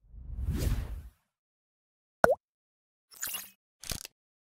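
Channel logo sting sound effects: a whoosh that swells and fades in the first second, a short sharp tone that dips in pitch just after two seconds, then two brief bright swishes near the end.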